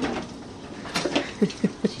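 A person's short chuckle: three quick voiced sounds, each falling in pitch, in the second half. Before it come light clicks of plastic dishes being handled at the sink.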